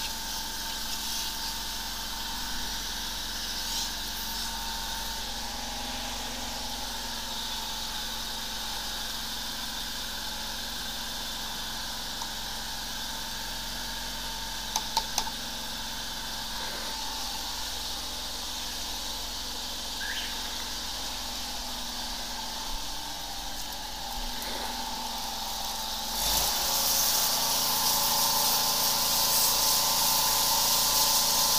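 A high-pressure sewer jetter's engine-driven pump running steadily, with a few sharp clicks about halfway. Near the end a loud hiss of high-pressure water spraying from the jetter nozzle comes in.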